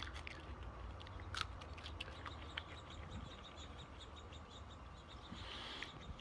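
Faint, scattered crisp crunches and clicks of a raw moringa pod being bitten and chewed, over a low steady background rumble.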